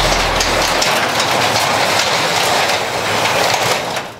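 An overhead garage door rolling open, a steady loud rattling and rumbling that cuts off abruptly near the end.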